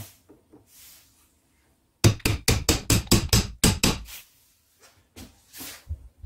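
A quick run of about ten hammer blows on a steel punch, roughly five a second, driving the loose handle out of a hammer head clamped in a vise; a few faint knocks follow near the end.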